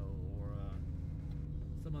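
Steady low drone of a 2003 Mercedes-Benz S55 AMG on the move, heard inside the cabin, under a man talking.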